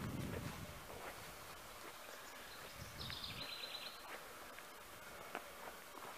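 Faint, steady outdoor background noise. About three seconds in, a bird gives one short, high trill of quickly repeated notes lasting about a second.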